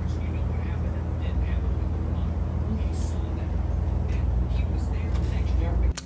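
A steady low rumble of outdoor background noise with faint, indistinct voices over it.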